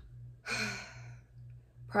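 A woman's breathy sigh, about half a second long, starting about half a second in, over a faint steady low hum.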